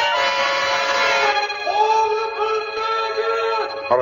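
Dramatic radio-drama music cue: a busy passage that settles, about halfway through, into long held notes lasting nearly two seconds.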